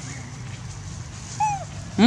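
A monkey gives one short call that falls in pitch, about a second and a half in, over a steady low background hum.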